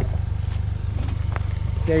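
2019 Ford Ranger's 2.3-litre EcoBoost four-cylinder running at low revs as the truck crawls down a rocky trail, a steady low rumble.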